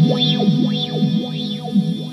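Electric guitar through an Old Blood Noise Endeavors Procession reverb pedal set to its filter tail. It makes a sustained ambient pad with a filter sweeping up and down through it over and over.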